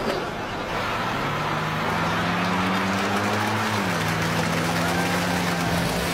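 Vehicle engine running under a rush of road noise as the vehicles move off, its pitch stepping down once about four seconds in.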